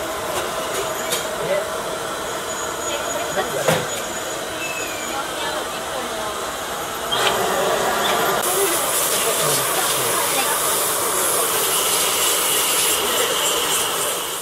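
Steady hissing room noise of a busy dental technology lab, with faint voices and a few sharp clicks. About seven seconds in it steps up, louder and brighter.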